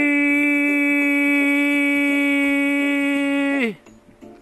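A man's voice holding one long, steady sung note that drops in pitch and breaks off about three and a half seconds in.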